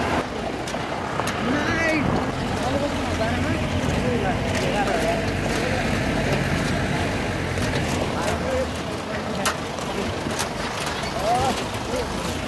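A jeep or pickup grinding slowly along a rough gravel road, its engine running low with scattered knocks and rattles from the body. Passengers chatter and call out over it.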